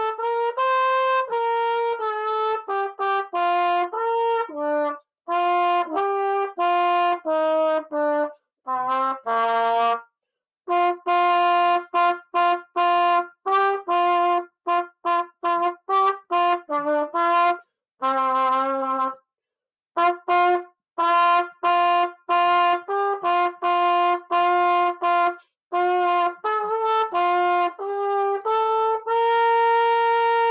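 Solo trumpet, unaccompanied, playing a holiday tune as a string of separately tongued notes. It pauses briefly between phrases, with a longer rest past the middle.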